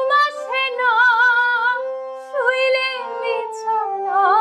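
A woman singing a Bengali folk song in long, held notes with a wavering vibrato, two phrases with a short break about two seconds in, over a faint low steady accompanying tone.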